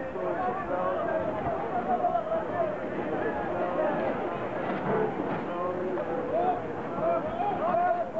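People talking continuously over steady background noise.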